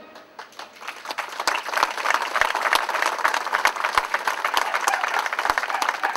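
A crowd applauding outdoors, many hands clapping, building up about a second in and then holding steady.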